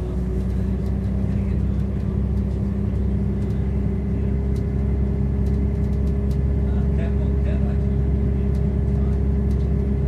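Inside a Class 170 Turbostar diesel multiple unit running at speed: the steady low rumble of the underfloor diesel engine and the wheels on the rails, with a steady hum through it.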